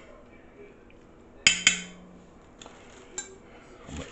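Metal fork clinking against the stainless steel inner pot of an electric pressure cooker: two sharp clinks in quick succession about a second and a half in, with a brief ring, then a couple of lighter clicks.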